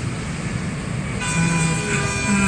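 Busy city road traffic, a steady rumble of buses, cars and motorbikes. Just past a second in, a steady pitched tone with many overtones joins it.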